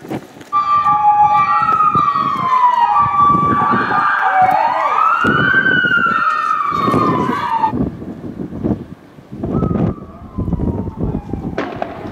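Police vehicle siren sounding in several overlapping tones that start about half a second in, one sweeping up and then falling in a long glide. It cuts off suddenly after about seven seconds, and a fainter falling tone sounds near the end.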